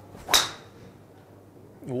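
TaylorMade SIM 3-wood (15°) striking a golf ball off a range mat: one sharp crack about a third of a second in, with a brief high ring.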